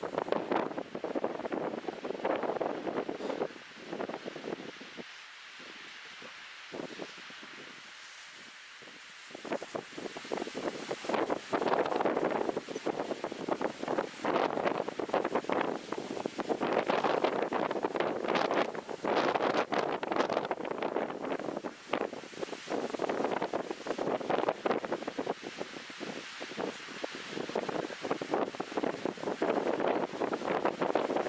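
Wind buffeting the microphone in uneven gusts, easing for a few seconds early on and then picking up again.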